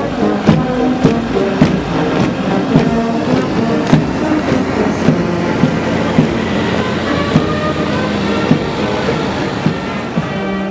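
A brass band plays march music, its tones fading back in the middle, over a steady beat of about three strokes every two seconds and the tramp of a marching column on the road.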